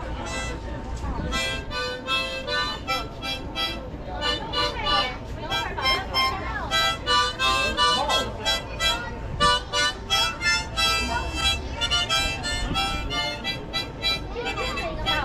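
Harmonica played with both hands cupped around it: a quick, rhythmic run of short notes and chords with brief gaps between phrases. Passers-by talk underneath.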